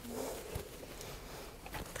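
Quiet classroom room tone: a faint voice right at the start and a few light taps, with nothing loud.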